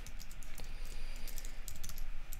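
Typing on a computer keyboard: a quick, irregular run of keystroke clicks.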